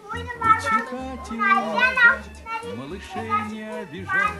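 Children's voices over background music with a steady low bass line.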